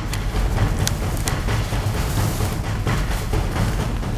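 Rumbling wind and handling noise on a handheld camera's microphone as a walker moves downhill, with a few sharp crunches about a second in.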